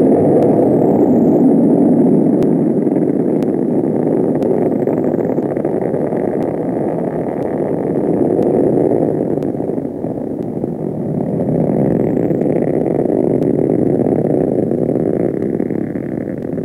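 Titan IIIE-Centaur rocket lifting off: the loud, steady roar of its solid rocket boosters, easing slightly about ten seconds in before swelling again.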